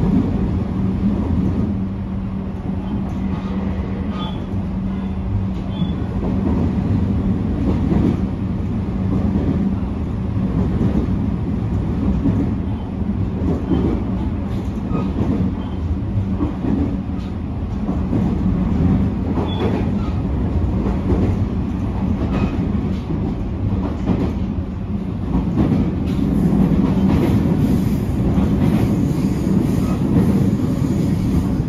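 Running sound inside a JR East GV-E400 series diesel-electric railcar in motion: a steady low drone over the rumble of wheels on the rails, with scattered rail-joint clicks. It grows a little louder near the end.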